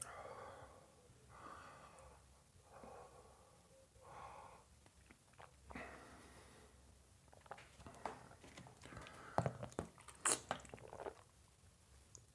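A man breathing hard through his mouth while a nasogastric tube is pushed down his nose into the back of his throat, a strained breath every second and a half or so: he is fighting his gag reflex. In the last few seconds comes a run of sharp clicks and crackles, loudest a couple of seconds before the end.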